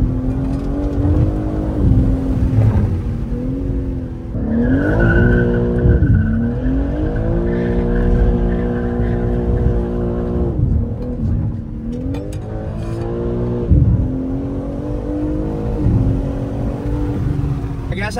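BMW G80 M3 Competition's twin-turbo 3.0-litre inline-six heard from inside the cabin, revving up and easing off under hard acceleration. The revs climb about four seconds in, hold high for several seconds, drop, then climb and fall again a few more times.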